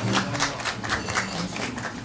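Small audience clapping at the end of a song, with the music stopped: a dense patter of hand claps that eases off toward the end.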